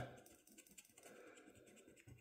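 Near silence with a few faint, brief scratches of a coin scraping the latex coating off a scratch-off lottery ticket.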